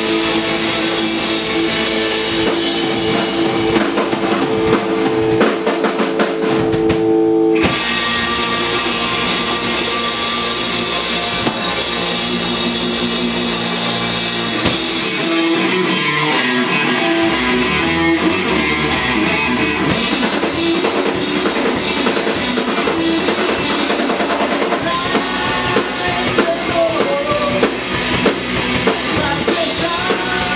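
Live rock band playing an instrumental passage: electric guitar, bass, drum kit and keyboard. The music changes about seven seconds in, and thins out briefly between about fifteen and twenty seconds before the full band comes back in.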